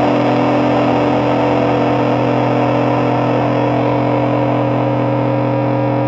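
Distorted electric guitar holding one chord, ringing steadily and loud after a quick falling run of notes.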